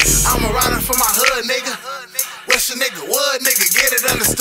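Hip hop track playing, with a rapped vocal over the beat. About a second in the deep bass drops out, leaving the vocal over a thinner beat, and the bass comes back in at the end.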